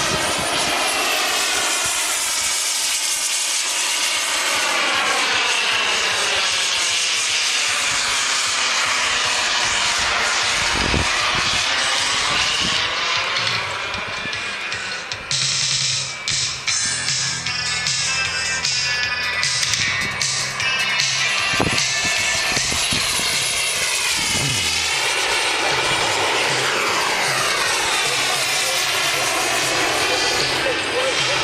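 Jet aircraft flying past, a continuous rushing jet sound whose pitch sweeps up and down as the planes pass by. Music with a stepping bass line joins in over the middle stretch.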